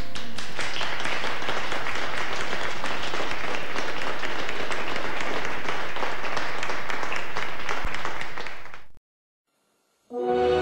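Audience applauding after a song, a steady mass of many hands clapping that fades out about nine seconds in.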